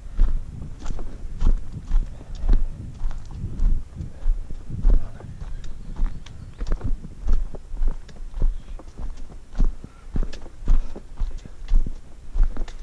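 Footsteps of a hiker walking down a rocky dirt trail, about two steps a second, each a dull thud with a gritty crunch of soil and small stones underfoot.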